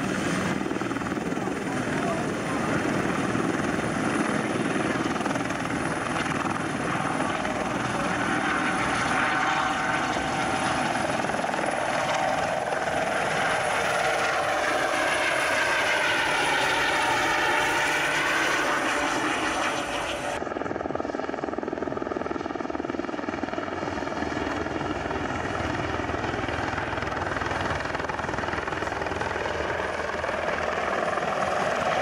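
Light single-engine helicopter (Eurocopter EC120 type) running and lifting off into a low hover, its turbine and rotor noise wavering in pitch as it moves. After an abrupt cut about two-thirds through, it is heard duller as it flies off low.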